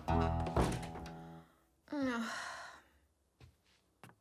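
Cartoon soundtrack: music with a thunk about half a second in, then a short breathy vocal sound falling in pitch about two seconds in, and a few faint short notes near the end.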